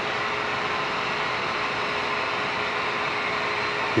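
Steady electrical static of the lobby's neon lights: an even hiss with a faint constant hum-like tone running under it.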